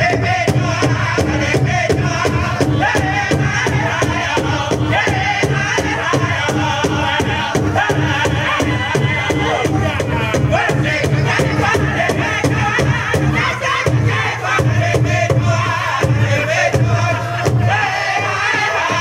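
Northern-style powwow drum group singing a song in unison over a large shared drum, struck in a steady beat throughout.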